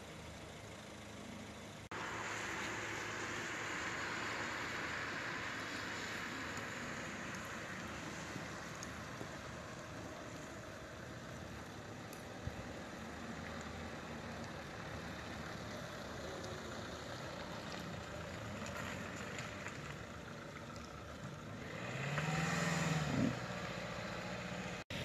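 Cars on a wet, icy road: a steady hiss of tyres and traffic. Near the end a car comes past close by, its engine note rising and then falling as it goes.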